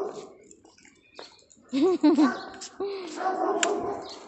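A dog whining and yipping in short pitched calls, a quick pair about two seconds in and a longer whine later.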